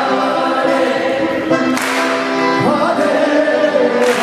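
Kirtan: a group of voices chanting a devotional melody together over sustained accompaniment, with a bright cymbal-like hit about two seconds in.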